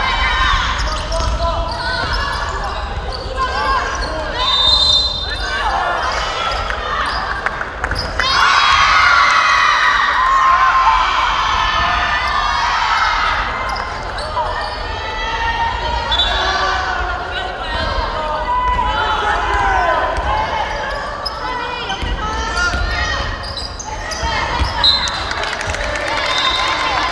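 A basketball bouncing on a gym floor during play, under near-continuous shouting and calling from players and spectators, loudest about a third of the way in.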